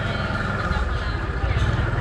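Open-air street market ambience: background voices of vendors and shoppers over a steady low rumble.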